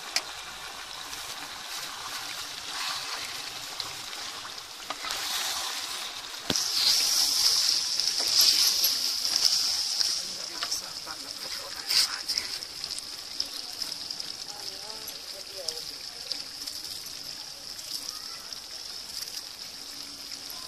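Chicken karahi sizzling in a metal pot as yogurt is stirred into the hot curry, with a few sharp clinks of the spoon against the pot. The sizzle grows loudest about six and a half seconds in and eases after about ten seconds.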